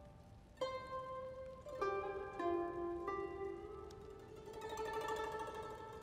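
Solo pipa (Chinese lute) playing a slow melody: a few single plucked notes ring out and die away, then longer sustained notes carry through the second half.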